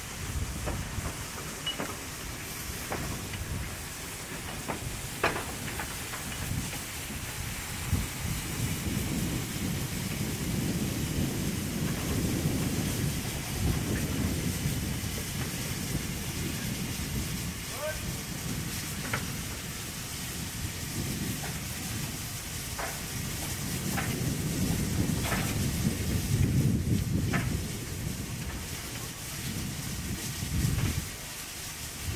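Wind buffeting the microphone in a storm: a low rumble that swells about a third of the way in and again near the end, with scattered sharp clicks.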